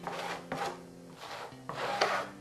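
Red plastic spreader rubbing and scraping across fiberglass weave on EPP foam as it spreads adhesive over the cloth, in two strokes, one about half a second in and one near the end.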